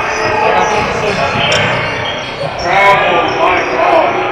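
Basketball bouncing on a hardwood gym floor during play, amid players' and spectators' voices in the large hall, with a louder shout about three seconds in.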